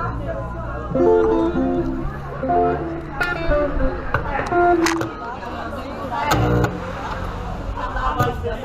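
Guitar playing a few short phrases of held notes and chords, with a steady low hum under it and people talking around it.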